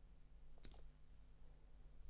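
Near silence with one short, faint click about two-thirds of a second in, as a silicone mould is flexed to release a cured UV resin casting.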